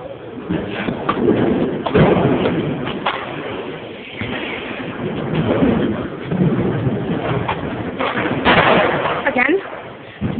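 People talking, with two sharp knocks about two and three seconds in.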